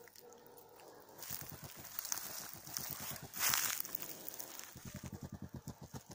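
Hedgehog puffing like a steam locomotive, a rapid run of short huffs that quickens towards the end, with one louder hissing burst about three and a half seconds in. It is the hedgehog's defensive huffing, meant to scare off the person over it.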